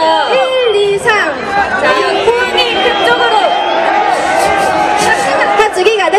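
Many excited voices talking and calling out at once over one another, with a crowd's babble underneath. No music.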